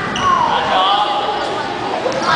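Children's basketball game in a gym: children's voices calling out over the thud of a basketball bouncing on the court.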